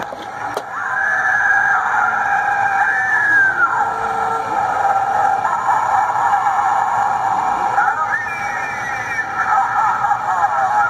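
A button click, then a light-up Halloween tree-face prop's small built-in speaker plays a spooky voice track, thin and tinny, after its 'Try Me' button is pressed.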